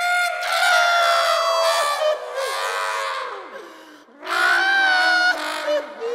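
A cartoon character's voice giving two long, high wailing cries, the first fading away and the second starting about four seconds in.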